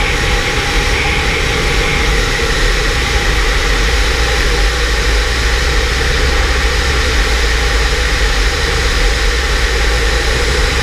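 Steady loud wind rushing over a camera worn by a skydiver in freefall, with a heavy low rumble of buffeting on the microphone.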